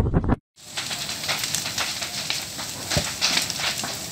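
Wind buffeting the microphone briefly, then after a cut a burning wooden beach cabin crackling with a steady mass of small pops and snaps. One low thump comes about three seconds in.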